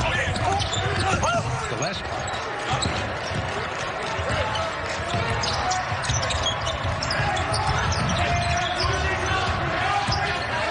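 A basketball being dribbled on a hardwood court, with short sneaker squeaks from players cutting on the floor, amid voices from the court.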